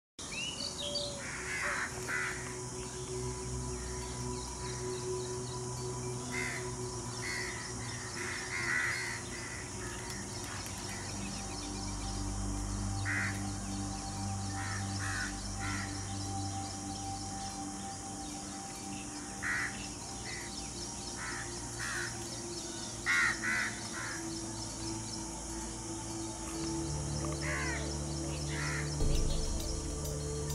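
Bird calls, short calls recurring every second or two, over background music with low sustained chords that shift every few seconds.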